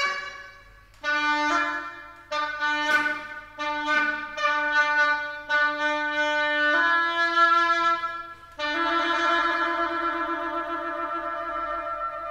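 Solo Rigoutat oboe playing a run of short, detached low notes on nearly the same pitch, then a slightly higher note, then a long held note with vibrato that fades out near the end.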